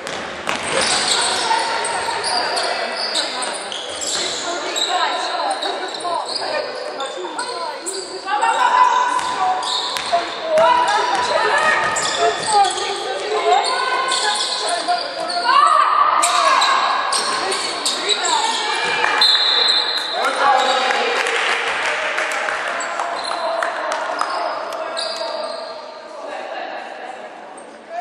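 Basketball game sounds echoing in a large sports hall: the ball bouncing on the hardwood court, sneakers squeaking on the floor, and players calling out.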